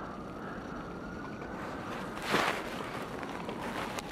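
Outdoor street ambience while walking on a snow-covered sidewalk: a steady hiss with a faint rising whine in the first half, and one brief louder noisy burst about two and a half seconds in.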